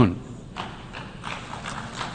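Light, scattered applause from an audience in a large hall, faint and irregular, as the speaker's voice dies away.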